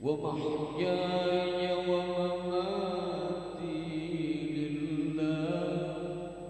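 A male qari reciting the Quran in the melodic tilawah style: one long, ornamented phrase that comes in suddenly and is held for over five seconds, amplified through a PA system.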